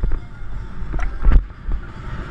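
Wind rushing over a rider-worn camera's microphone at a gallop, with a low rumble and irregular thuds of hoofbeats jolting the camera.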